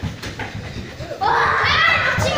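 A group of small children running across a hall floor, a quick patter of footsteps, then children's high voices calling out loudly from just over a second in.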